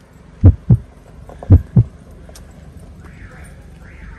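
Footsteps of someone walking while holding the camera, heard as dull, heavy low thumps coming in two close pairs in the first two seconds, then a low steady hum.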